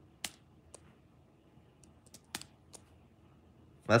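A handful of light, irregularly spaced clicks, about six in all, from fingers tapping and handling an iPad Air 2.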